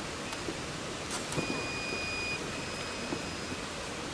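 Two long, steady electronic beeps from a fencing scoring machine, about a second each with a short gap between, over the steady background noise of a large fencing hall. A couple of sharp clicks come just before the first beep.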